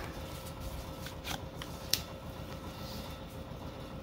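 A stack of Topps baseball cards being handled and flipped through by hand, card stock sliding against card stock, with a few light clicks about a second or two in.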